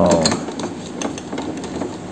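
Small metallic clicks and scrapes of a screwdriver working the printhead mounting screw of an Epson LQ-2190 dot-matrix printer, over a steady low mechanical hum.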